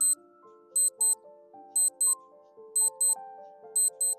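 Countdown-timer clock ticking sound effect: a pair of sharp ticks about once a second, over soft background music of slow held notes.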